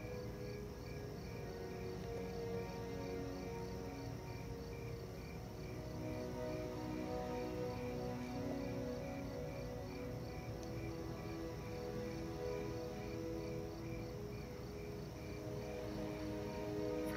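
Crickets chirping in an even, repeating rhythm over soft film-score music of long held low notes.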